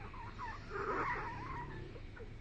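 A sleeping French bulldog making wavering, squeaky whines, loudest about a second in.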